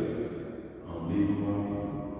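A man's voice chanting on long, held notes close to the microphone: a priest intoning the Mass liturgy over the chalice. One phrase trails off just after the start, and another begins about a second in.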